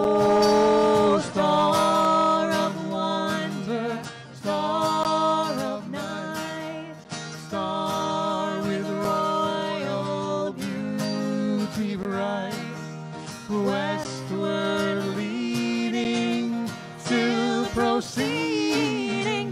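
A woman singing, with acoustic guitar accompaniment; her notes are long and held.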